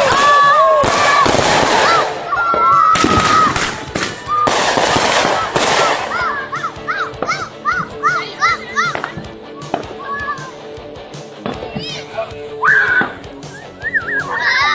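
Aerial fireworks going off: a quick run of sharp bangs and crackles through roughly the first six seconds, thinning out after that, with children's voices calling out over them.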